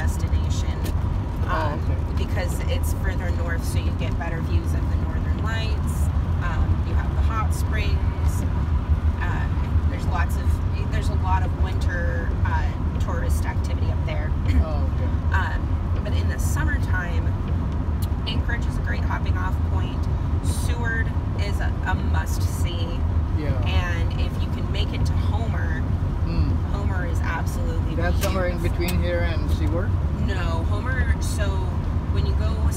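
A woman talking over the steady low rumble of road and engine noise inside a moving Chevrolet van's cabin.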